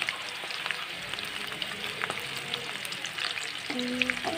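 Batter fritters deep-frying in hot oil in a wok: a steady sizzle dotted with many fine, quick crackles.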